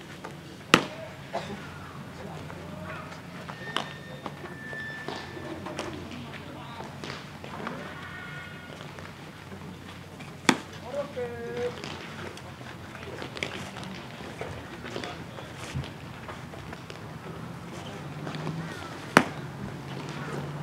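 A baseball smacking into leather gloves: three sharp pops about ten seconds apart, with lighter catches between them, over players' distant shouts and chatter.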